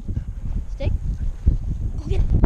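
Dog-mounted action camera picking up the dog's own movement: irregular low thuds of footfalls and rumbling rub of fur and harness against the camera as the dog moves off. A brief voice call is heard about halfway through.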